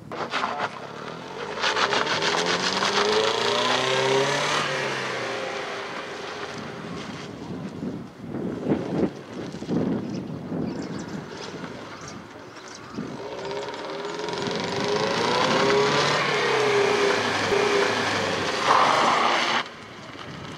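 Mercedes-Benz W124 saloon reversing hard across loose gravel. The engine revs climb in reverse gear, drop back in the middle, then climb again, over the crunch of the tyres sliding on the gravel. A short loud burst of noise comes near the end.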